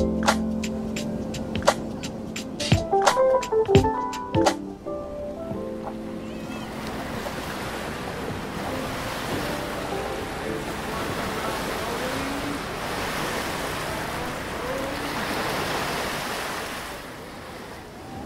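Background music with struck notes ends about four and a half seconds in. It gives way to the steady rush of ocean surf, which swells and fades out near the end, with a faint voice under the waves.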